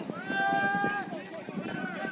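Men shouting calls across a football pitch during open play: a long, high-pitched held shout about a quarter of a second in, lasting nearly a second, then a shorter one near the end.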